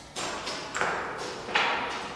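Footsteps on bare wooden floor joists: three steps about two-thirds of a second apart, each one echoing in a large empty room.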